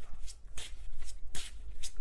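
Tarot deck being shuffled by hand: a rapid, irregular run of short card strokes.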